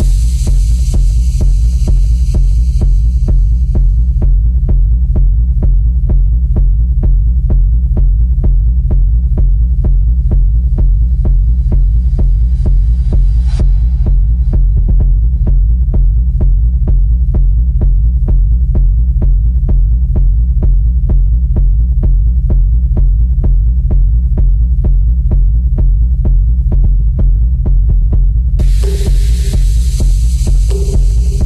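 Minimal techno mix: a deep, throbbing bass pulse repeats steadily throughout. A high hissy layer fades out in the first few seconds, another high layer cuts off suddenly about halfway, and bright high sounds come back in just before the end.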